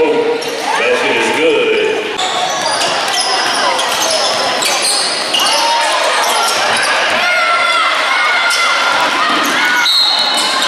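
A basketball bouncing on a hardwood gym floor and sneakers squeaking during live play, under indistinct crowd voices, with the echo of a large gym.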